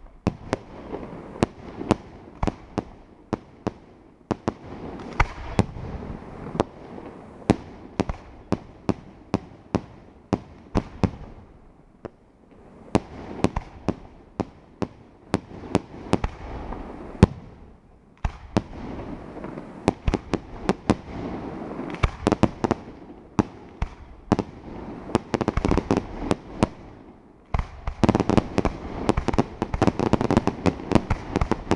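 Aerial fireworks shells bursting in a steady run of sharp bangs, several a second, over a crackling hiss of falling stars. The barrage thins briefly a few times and grows denser near the end.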